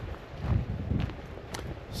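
Wind buffeting the microphone in an uneven low rumble, with a few footsteps on a gravel track about two a second.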